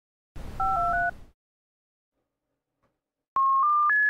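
Synthesized electronic intro tones: a brief hiss carrying paired steady beeps that change pitch twice, then about two seconds of silence. Near the end a run of pure electronic beeps begins, stepping up in pitch note by note.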